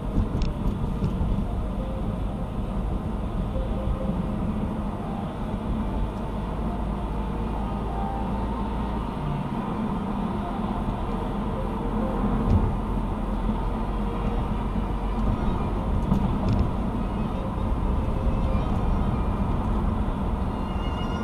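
Steady road and engine noise heard inside a car's cabin while cruising at highway speed.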